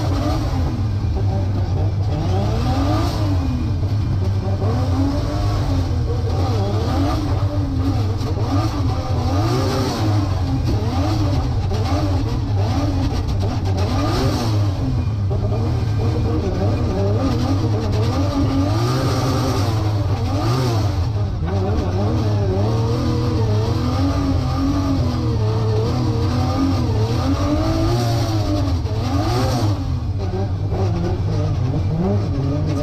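Toyota 2JZ straight-six engine of a drift-built GT86 revving up and down again and again, its pitch swinging every second or two as the throttle is worked through a drift, heard from inside the cabin.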